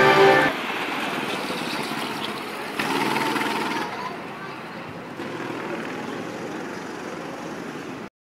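Honda GX200 four-stroke kart engines running on the circuit, heard through the camera's own microphone. The sound swells about three seconds in and again near five seconds, then cuts off at the end.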